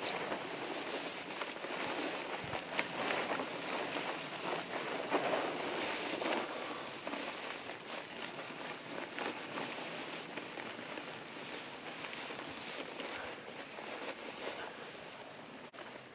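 Crinkling and rustling of a large tarp with a reflective silver lining as it is wrapped around a person's body, busiest in the first half and easing off toward the end.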